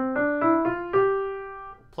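Acoustic piano playing the C major five-finger pattern: five single notes stepping up from middle C to G (C, D, E, F, G) in about a second, the last note held and dying away.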